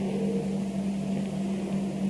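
A steady low hum with an even background hiss, in a pause between spoken phrases.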